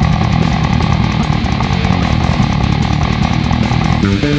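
Death-metal instrumental passage: a custom six-string fretless bass played fast with the fingers over distorted guitar and drums, in a dense, driving riff. The low end is thick and blurred, with no clear separate notes.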